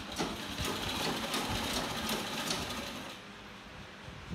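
A sewing machine stitching at a quick, even rhythm for about three seconds, then stopping.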